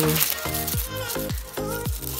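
Background music with a steady repeating pattern, over a crackling rustle in the first moments from a hand rubbing the dried florets off a sunflower seed head.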